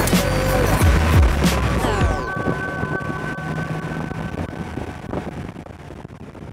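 Air-cooled flat-six of a 1980s Porsche 911 Carrera running on the road for about the first two seconds, under background music. The music then carries on with long held notes and fades out steadily toward the end.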